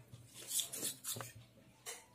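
A steel spoon stirring a thick, wet paste in a small stainless steel bowl, scraping and knocking against the sides a few times in short separate strokes.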